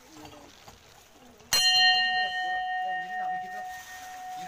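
A metal temple bell struck once about a second and a half in, then ringing on with a clear tone that slowly fades.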